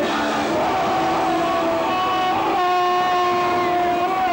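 Live hardcore band's distorted electric guitars holding a long ringing chord over crowd noise, the held notes shifting in pitch once about two and a half seconds in.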